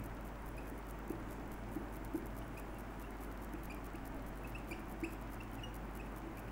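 Felt-tip marker writing on a whiteboard, giving many short, faint squeaks over a low steady hum.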